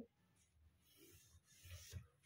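Near silence, with a faint scratch of a pencil drawn along a metal ruler on drafting paper, rising towards the end.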